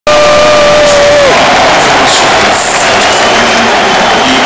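Loud, continuous noise of a large football stadium crowd of fans. Over it, a single held tone for a little over a second slides down in pitch and stops.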